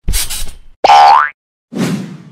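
Cartoon sound effects: a short noisy burst, then a rising springy boing about a second in, and another short noisy hit near the end.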